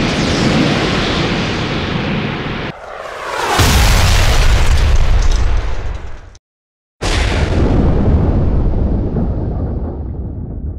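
Film explosion sound effects: a steady rumble breaks off, a falling whoosh follows about three seconds in, and then a loud explosion with a deep rumble. The sound cuts out completely for about half a second, and then a second blast hits and slowly fades.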